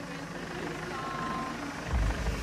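A camper van's engine idling steadily, heard at the driver's open window, with a low thump near the end.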